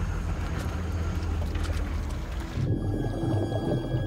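Yamaha outboard motor running steadily as a flat-bottom boat moves through the bayou. About two and a half seconds in, the sound turns muffled and low, a dull underwater rumble.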